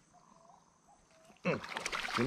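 Barramundi thrashing in shallow water at the bank's edge, a sudden loud splashing starting about one and a half seconds in as it is grabbed by hand.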